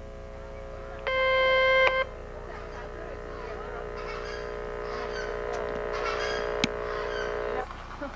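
Steady pitched tones. One loud held tone lasts about a second, a little way in. A quieter cluster of several steady tones follows, held for about six seconds, and cuts off suddenly near the end.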